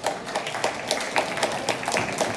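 Scattered audience clapping, with individual claps heard distinctly rather than as a dense roar of applause.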